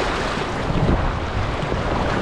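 Shallow whitewater rapids rushing and splashing around a kayak's bow, a steady hiss of moving water, with irregular low rumbles of wind buffeting the microphone.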